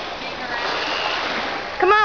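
Steady rushing noise with faint, distant voices, and near the end a loud, short call whose pitch bends.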